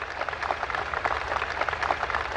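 A large audience applauding: dense, continuous clapping from many hands.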